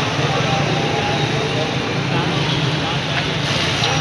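The many overlapping voices of a street crowd, mixed with the steady low running of motorcycle engines moving slowly through it.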